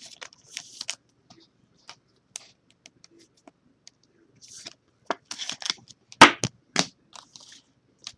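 Trading cards being handled with a soft plastic card sleeve: light crinkling, scrapes and small clicks of plastic and card stock, busiest and loudest about six seconds in.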